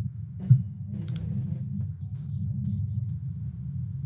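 A steady low hum with a single sharp thump about half a second in, followed by a few clicks.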